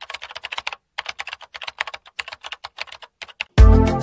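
Computer-keyboard typing sound effect: quick runs of clicks with short pauses between them. About half a second before the end, music with a heavy bass beat starts loudly.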